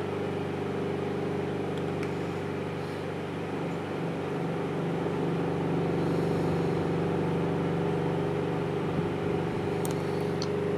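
A steady low machine hum made of several held tones, unchanging in level.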